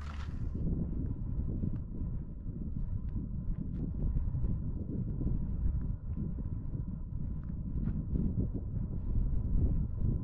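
Wind buffeting the microphone outdoors: an uneven low rumble that rises and falls, with a few faint clicks.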